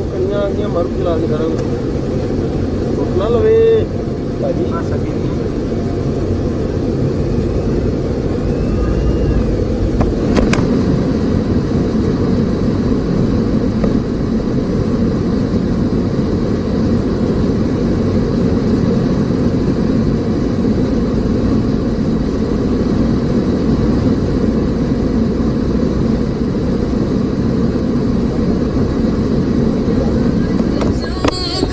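Steady low rumble of a moving road vehicle, with voices briefly near the start and a single sharp click about ten seconds in.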